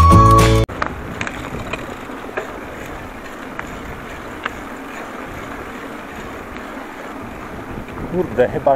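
Music cuts off abruptly under a second in, giving way to the sound of a bicycle ridden along a patched asphalt road: steady tyre and wind noise with a few light, irregular clicks.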